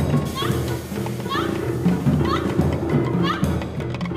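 Free improvised music for voice, violin and percussion: wordless vocal sounds and low held tones over scattered drum and stick hits. A short high rising glide recurs about once a second.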